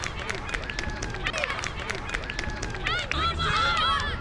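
Children's voices shouting and calling out on an outdoor soccer field, with a burst of high-pitched shouts near the end, over a scatter of light clicks and taps.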